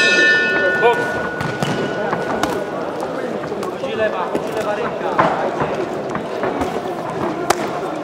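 Boxing ring bell struck once to open the first round, ringing out and fading over about three seconds. Then arena noise with shouting voices and a few sharp thuds as the boxers move and throw punches.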